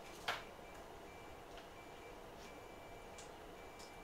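A single sharp click about a third of a second in, then a few faint ticks, over quiet room noise with a faint thin high tone that comes and goes.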